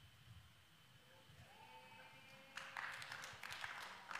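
Near-silent pause with a faint steady hum, then from about two and a half seconds in a faint wash of scattered audience clapping.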